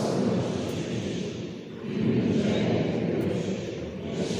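Congregation reciting the Creed together in Portuguese: a blurred murmur of many voices that swells and dips phrase by phrase, with a short lull near the middle.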